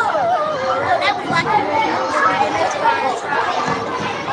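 Indistinct chatter of several children's voices talking over one another.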